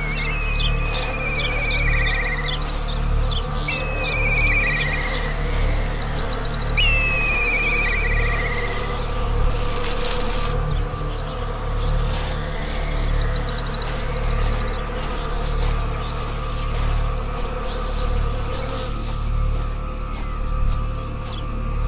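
Steady insect hum with a small bird singing a short descending trill three times in the first half.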